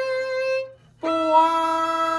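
Violin playing two slow, sustained bowed notes: the first held note stops a little before the middle, and after a brief break a new, lower note begins about halfway through and is held steadily.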